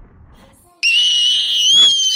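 The fading tail of a boom, then, about a second in, a loud, high-pitched cartoon scream sound effect held steadily, stepping slightly up in pitch partway through.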